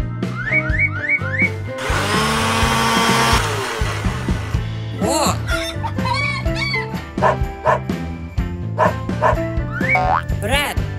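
Cartoon background music with bouncy notes and short rising glides, broken about two seconds in by a blender's whirr that lasts about a second and a half.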